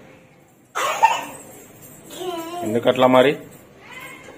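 Wordless vocal sounds from young children at play: a sudden breathy burst like a cough or exclamation about a second in, then a child's voice vocalising for about a second near the three-second mark.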